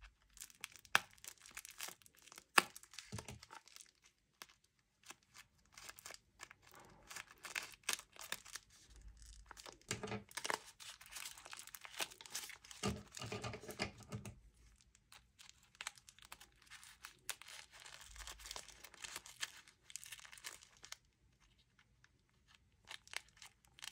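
Crinkling and tearing noises with sharp snips as scissors cut at a small foam paint roller, coming in irregular short bursts with pauses between.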